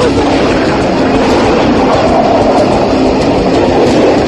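Hardcore band recording playing loud: a dense, unbroken wall of distorted electric guitars and drums.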